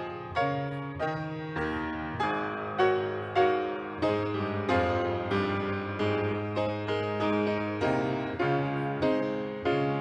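Grand piano played solo: chords and melody notes struck at a steady pulse a little under twice a second, each ringing and fading over sustained bass notes.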